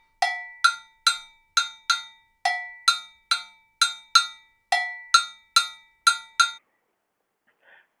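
Gankogui, an Ewe iron double bell, struck with a stick playing its timeline pattern. The pattern is a repeating group of five ringing strokes, a lower note followed by four higher ones, heard three times and stopping about six and a half seconds in.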